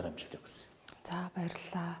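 Only speech: quiet conversational talk.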